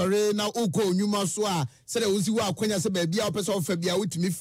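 Only speech: one voice talking fast and without pause in a rhythmic cadence.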